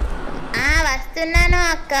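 A high-pitched voice singing, with a bending note about half a second in, then a longer note held steady, and another starting near the end.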